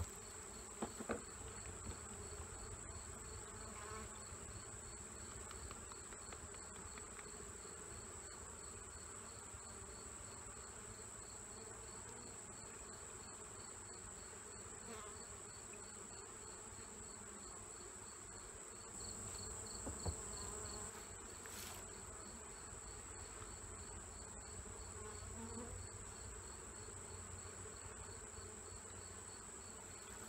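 Honeybees humming around an open hive, under chirping insects: a steady high-pitched trill and a regular pulsing chirp. A few light knocks of plastic cups being handled near the start and about twenty seconds in.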